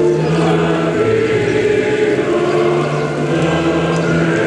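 Slow choral music with long held notes that change about every second.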